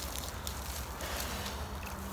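Quiet outdoor background noise: a low steady rumble and faint hiss with no distinct event, and a faint low hum coming in near the end.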